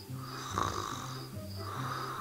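A girl snoring, two breathy snores about a second and a half apart, over soft background music with steady low notes.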